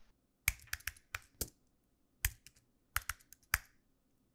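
Computer keyboard keys being tapped: about ten short, sharp clicks in irregular clusters, with gaps of near-silence between them.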